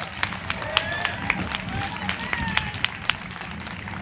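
Irregular sharp taps and knocks, about ten in four seconds, over faint talk in the background.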